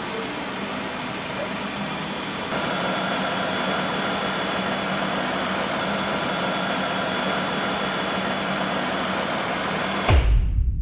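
3.6-litre V6 (Pentastar) engine of a 2012 Jeep Grand Cherokee idling steadily, heard from over the open engine bay. The sound grows a little louder, with a faint whine entering, about two and a half seconds in.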